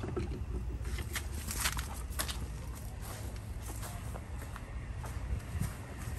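Footsteps walking across grass: soft, irregular steps over a steady low rumble.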